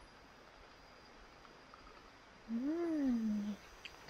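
An animal's single drawn-out call, rising then falling in pitch and lasting about a second, about two and a half seconds in.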